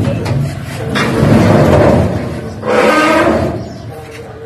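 Sheet-steel rice-thresher parts being loaded onto a metal truck bed: two long grating scrapes, the first about a second in and the second shortly after halfway.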